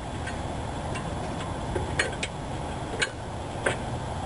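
1997 Toyota Camry rear disc brake pad being pushed into its caliper bracket, its steel backing plate clicking against the bracket and its metal clips: several sharp, irregular clicks over a steady low hum.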